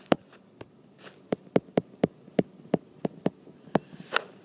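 Stylus tapping and ticking against a tablet's glass screen while handwriting a word: a quick, irregular run of sharp clicks, about four a second.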